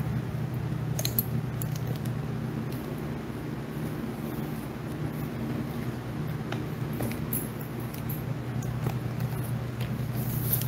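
Steady low hum with a few faint, short clicks, the first about a second in.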